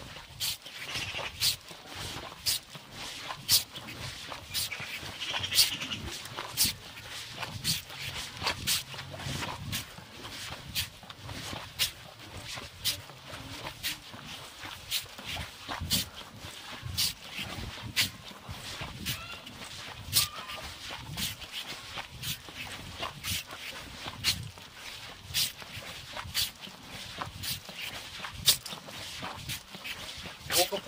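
A dog barking over and over, about one bark a second, some barks louder than others.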